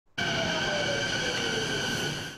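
Canada Line electric metro train pulling into a station. It makes a high whine of several steady tones, with a lower tone that falls slowly in pitch as the train slows. The sound cuts in abruptly at the start.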